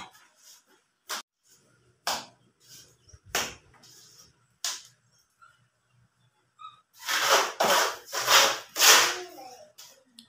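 Hand plastering with cement mortar and a steel trowel: a few sharp slaps and taps spaced about a second apart, then a run of louder scraping strokes near the end as mortar is scooped and worked with the trowel.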